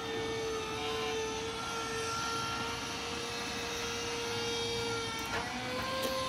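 A steady machine drone: one unbroken hum under a constant hiss, shifting slightly in pitch about five seconds in.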